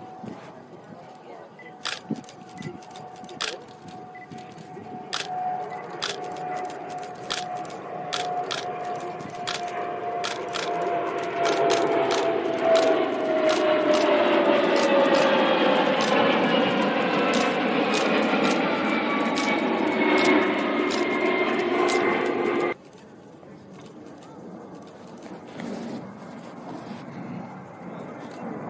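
A jet aircraft passing by: the engine noise builds steadily, and its whine slowly falls in pitch as the jet goes past. The sound cuts off suddenly near the end.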